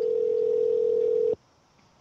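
A single steady telephone line tone, held for about a second and a half before it cuts off abruptly.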